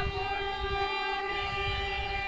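A group of women singing a Santal dong wedding song together, holding one long note. A barrel drum beats softly underneath.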